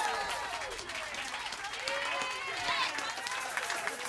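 Audience clapping and cheering, with drawn-out whoops and calls from voices over the scattered claps.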